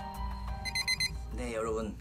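A quick run of about five high electronic beeps, like a digital alarm clock, lasting about half a second over a steady music bed. A voice follows near the end.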